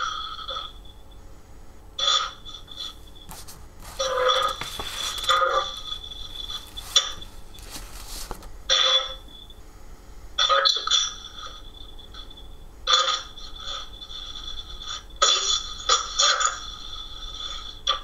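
Ghost box (spirit box) sweeping through radio stations, heard over a video call: irregular short bursts of radio static and clipped broadcast fragments every second or two, with quieter gaps between them.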